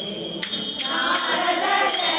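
A group of women singing a devotional bhajan in unison, kept in time by small brass hand cymbals (tala) struck about three times a second. After a short break the strikes resume about half a second in, and the voices swell about a second in.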